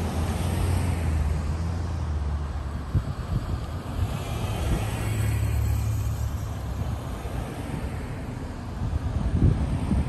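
Road traffic: cars passing on the street, a low engine and tyre rumble that swells and fades with each car.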